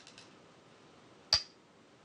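A Go stone placed on the board: one sharp click a little over a second in, with a brief high ring.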